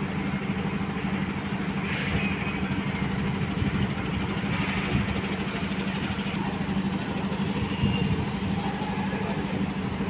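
A rail vehicle's engine running steadily, a constant low hum.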